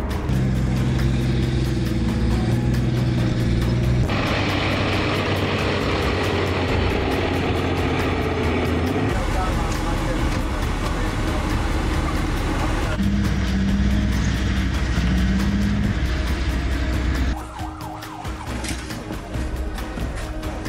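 Military vehicle engines running with a steady low hum and rough mechanical noise, broken into several short clips by hard cuts about every four to five seconds. Near the end it drops to a quieter stretch with voices.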